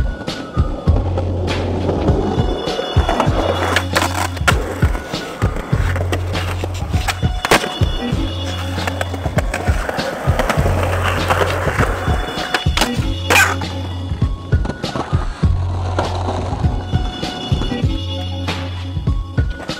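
Skateboard wheels rolling on concrete and the board sliding along a concrete ledge, with sharp cracks of pops and landings, two of them standing out about halfway through and again near the end. Music with a heavy, pulsing bass line plays under it.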